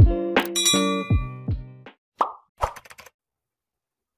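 Intro music with deep drum hits that drop in pitch, ending about two seconds in, followed by two short sound effects, a pop and then a click.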